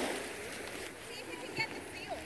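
Faint, indistinct voices over a steady wash of gentle surf and wind on shallow sea water, with a brief high-pitched call about one and a half seconds in.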